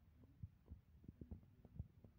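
Near silence: faint room tone with a few soft, irregular low thumps.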